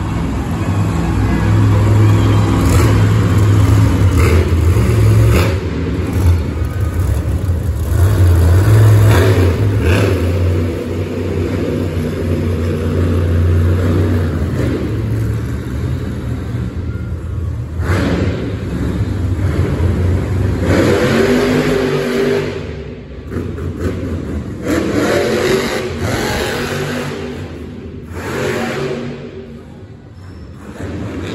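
Monster truck engine revving and running hard around a dirt arena track. The deep engine rumble is heaviest through the first half and rises and falls with the throttle.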